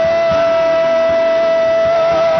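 Live gospel worship music: one long note held steady by a singer over a band accompaniment.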